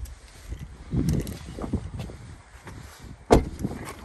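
Handling knocks in the cargo area of a 2021 Honda CR-V as the cargo floor panel is lowered over the spare tire kit, then one sharp slam about three seconds in.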